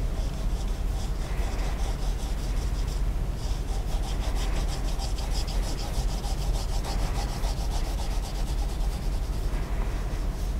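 Soft ebony pencil shading on drawing paper: quick, regular back-and-forth strokes scratching across the sheet, coming thicker from about three and a half seconds in. The strokes run over a steady low hum.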